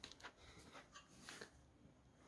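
Near silence: room tone with a few faint soft ticks in the first second and a half.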